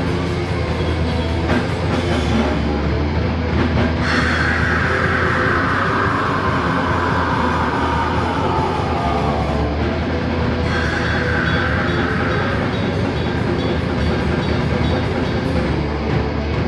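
Heavy metal band playing live: distorted guitar and a drum kit at full volume. From about four seconds in, a high note slides slowly down in pitch over several seconds.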